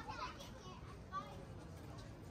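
High-pitched voices of people in the street, heard briefly near the start and again about a second in, over a steady low street rumble.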